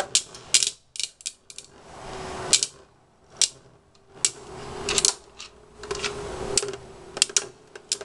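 Two counterfeit Beyblade spinning tops (Galaxy Pegasus and Hell Kerbecs) battling in a clear dish. They make a faint spinning whir and hum, broken by irregular sharp clacks as the tops strike and scrape against each other and the dish wall.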